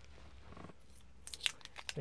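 A short run of sharp clicks and rustles in the second half, after a quiet start: handling noise as a roll of Scotch tape is picked up.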